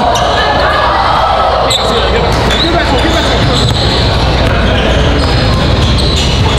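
Basketball game in a gymnasium: a ball bouncing on the hardwood court, with sneaker squeaks, over steady crowd chatter.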